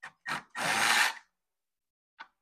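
Cordless drill driving a socket extension on a stator nut of a GM SI-series alternator: two light clicks as it is set on, then one short run of the drill lasting under a second. The nut does not come off.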